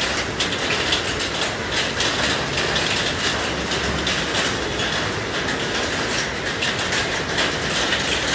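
Fast-flowing floodwater running over a street: a steady rush of water with a dense crackle of splashes through it.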